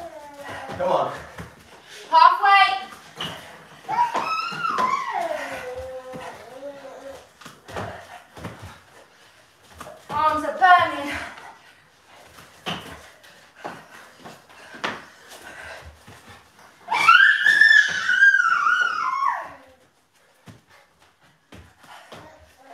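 A young child's high voice making wordless calls and babbling in sliding, rising and falling sounds, four times, the longest and highest near the end. Between them come short soft thuds from bodies landing on exercise mats during burpees.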